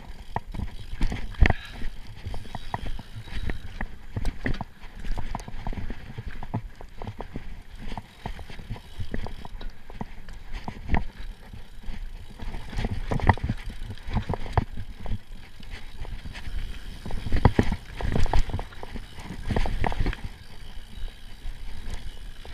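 Giant Trance Advance full-suspension mountain bike ridden fast down a dirt singletrack: tyres rolling over the trail, with irregular knocks and clatter as it hits roots and bumps.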